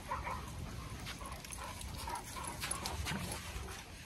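Faint, scattered whimpers and whines from dogs, with a low background rumble.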